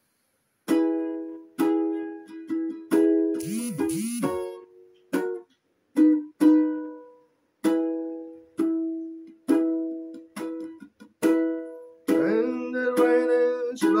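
Solo ukulele playing a slow intro, single chords and notes struck one at a time and left to ring and fade, starting about a second in. A voice starts singing near the end.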